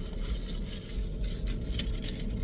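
A man biting into and chewing a small hamburger inside a car cabin, over a steady low hum from the car. There is one sharp click near the end.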